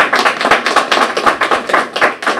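A small audience applauding: a dense run of hand claps that tapers off near the end.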